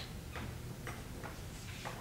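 Faint, evenly spaced ticks, about two a second, over quiet room tone.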